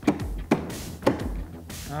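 A hammer striking a steel chisel held against a padlock shackle, four sharp metallic hits about half a second apart; the lock holds.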